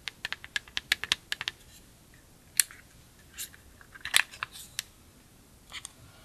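Long acrylic fingernails tapping and clicking on a plastic makeup compact: a quick run of sharp taps in the first couple of seconds, then a few scattered clicks as the compact's hinged lid is opened.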